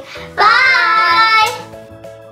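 A child's voice holds one long sung note for about a second, cut off suddenly, over light background music that carries on after it.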